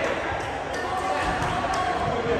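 A volleyball bouncing a few times on a hardwood gym floor, mixed with players' voices echoing in a large hall.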